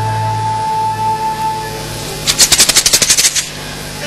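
Chinese opera orchestral accompaniment: a long held instrumental note over a low drone. About halfway in comes a quick roll of sharp percussion strikes, about a dozen a second for roughly a second, which is the loudest part.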